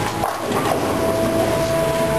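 Bowling alley din: a steady rumble of balls rolling on the lanes and the alley machinery. A steady thin tone joins a little under a second in.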